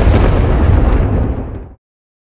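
A loud cinematic boom-and-rumble sound effect on an advert's closing logo, deep and noisy, fading quickly and cutting off to dead silence just before the end.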